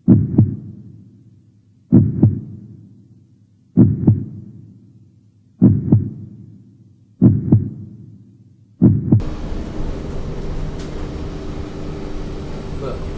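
Heartbeat sound effect: six slow double thumps, lub-dub, about two seconds apart and coming slightly quicker toward the end. About nine seconds in it cuts to the steady low hum of a city bus interior while the bus runs.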